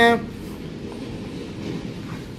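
A man finishes a word, then a steady low hiss and rumble of background noise with no distinct knocks or clicks.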